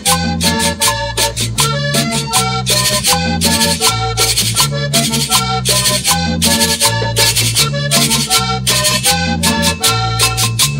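Instrumental break of a vallenato conjunto recording: a diatonic button accordion plays quick melodic runs over a stepping bass line and a steady fast percussion beat, with no singing.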